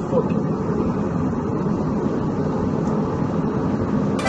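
Steady in-flight airliner cabin noise heard from inside the plane's lavatory: an even, loud rumble of engine and air noise.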